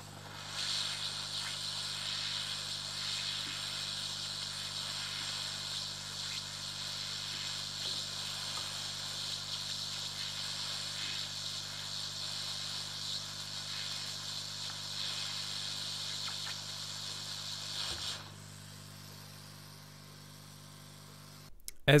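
Hot air reflow station blowing a steady hiss of hot air onto a burnt SOT-89 P-channel MOSFET to desolder it from a motherboard. The airflow starts about half a second in and cuts off at about 18 seconds.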